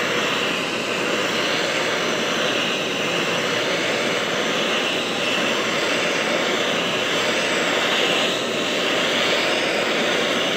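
Handheld gas torch burning with a steady hiss as its flame is swept back and forth across pine boards, scorching the wood.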